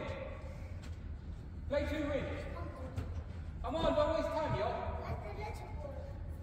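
Men's voices calling out in two short stretches, echoing in a large hall, over a steady low hum, with a couple of faint knocks.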